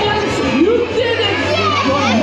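Ride soundtrack from a motion-simulator theatre: high, squeaky cartoon Minion voices chattering and cheering in swooping pitches, over a steady low hum.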